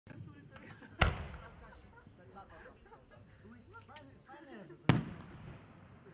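A 6-inch aerial firework shell: the mortar's launch bang about a second in, then the shell bursting near the end, two sharp bangs about four seconds apart, each trailing off in a long echo.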